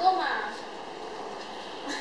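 A person's voice trails off in the first half-second, followed by a steady, even background noise with no distinct events.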